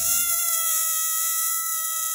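A balloon squealing as air is let out through its stretched neck: one steady, high whining tone with a hiss of rushing air.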